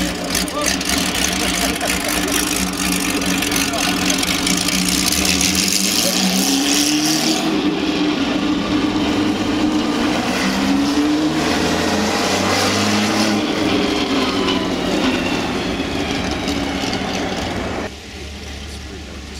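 Porsche 917LH's air-cooled flat-12 racing engine running steadily, then revved up in several rising pulls from about six seconds in as the car drives off. The sound stops abruptly at the end.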